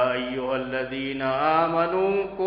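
A man chanting a Quranic verse in Arabic in melodic recitation, holding long drawn-out notes; this is the verse on the obligation of fasting.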